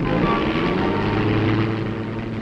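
Propeller aircraft's piston engine running loud and steady, rising a little in pitch just at the start.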